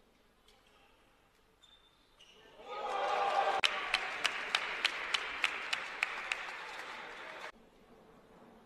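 Table tennis rally: the celluloid-type ball clicks sharply off the bats and table about three times a second, over the noise of an arena crowd. The sound stops abruptly near the end.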